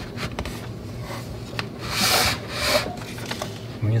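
Paper backing of a 120 roll film sliding out through the slot of a LAB-BOX daylight developing tank, a papery rubbing in a few pulls, loudest about halfway through, with faint clicks between. The film is unspooling from the roll into the tank's film cylinder.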